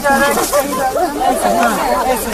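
Speech: a newsreader's voice narrating the news.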